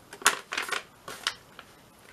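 Sheet of paper rustling and crackling as hands fold it up and press the fold flat, in a few short crisp bursts, the loudest about a quarter second in.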